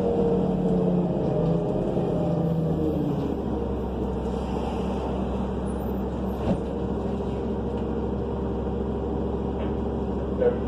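Cabin drone of a 2005 New Flyer C40LF bus with its Cummins Westport C Gas Plus natural-gas engine, heard with no HVAC running. The engine note drops about three seconds in and settles into a steady low hum, with one sharp click near the middle.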